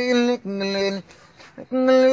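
A man imitating a guitar with his voice: held notes that jump from one pitch to another, a short break a little past the middle, then another long note.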